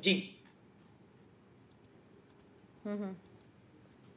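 A man's voice cuts off at the start, then a pause in which a few faint clicks sound, then a short voiced sound about three seconds in.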